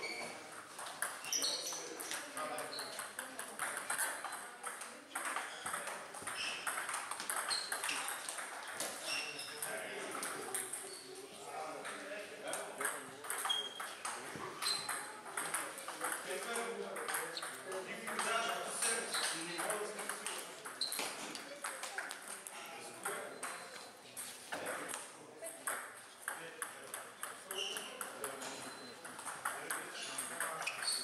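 Table tennis ball struck back and forth with paddles and bouncing on the table in rallies, a run of sharp, high ticks and pings, with voices murmuring in the background.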